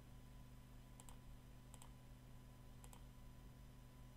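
Faint computer mouse clicks, three quick press-and-release double clicks spread over a couple of seconds, as points are placed with Photoshop's polygonal lasso tool, over a low steady hum.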